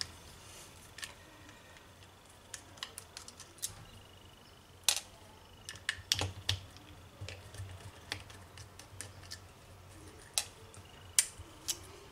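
Small sharp clicks and metal taps of a screwdriver working the screws out of a laptop hard disk's metal holder, with the holder and drive being handled; scattered light ticks, with a few louder clicks around the middle and near the end.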